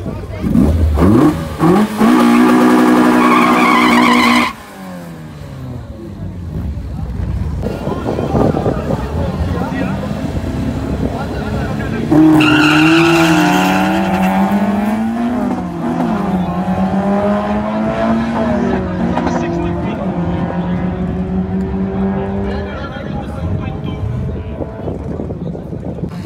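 Hatchback doing a burnout in the water box: the engine revs up and is held at a steady high pitch while the tyres squeal, cutting off suddenly about four seconds in. About twelve seconds in, two cars launch off the drag strip start line and accelerate away, their engines climbing in pitch, dropping back at gear changes and fading into the distance.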